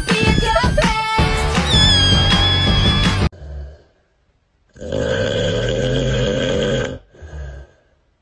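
Upbeat music with a high, wavering melody cuts off suddenly about three seconds in. It is followed by a snoring sound effect: a short snore, a pause, one long drawn snore of about two seconds, and a shorter one near the end.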